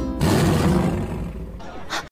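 A loud tiger-like roar lasting about a second, over background music.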